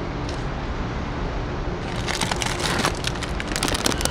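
Plastic bag of dry cat food crinkling as it is handled, a rapid run of crackles starting about halfway through, over a steady low rumble.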